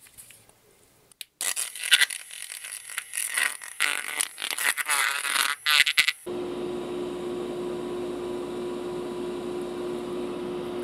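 A metal stir stick scraping and clicking against a plastic mixing cup as 2K clear and reducer are stirred. About six seconds in, a motor switches on with a steady hum.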